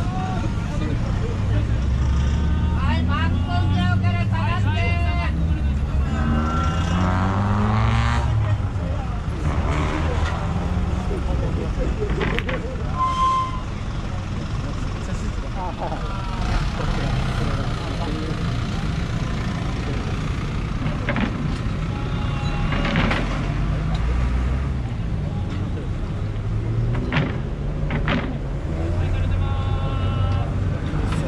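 Car and truck engines pulling away at low speed, with one engine revving up, rising in pitch, several seconds in, over crowd chatter.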